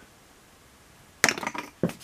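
A small plastic action-figure head dropped and clattering, a quick run of sharp knocks as it hits and bounces, starting a little over a second in.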